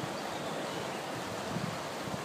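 Steady rushing noise of churned water at a canal lock, with wind on the microphone. There is no impact yet.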